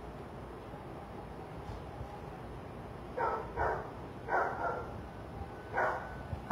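A dog barking five times, in two quick pairs and then a single bark near the end, over low steady outdoor background noise.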